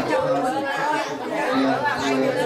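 Chatter of several people talking over one another in a large room, with no other sound standing out.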